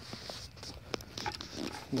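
Faint crackling and popping of bubbles as dry biochar soaks up a fermented liquid-fertilizer mix in a bucket, with scattered small pops over a soft fizz as air escapes from the char.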